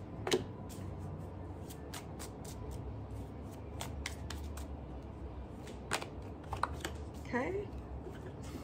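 A deck of oracle cards being shuffled by hand: a loose run of short, crisp flicks and taps as the cards slide and knock together.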